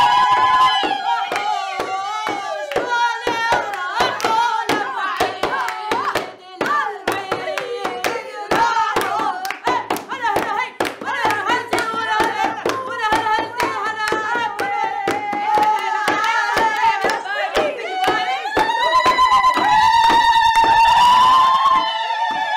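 Women singing a festive folk song together, with rhythmic hand clapping and a frame drum beating time throughout; a long held sung note near the end.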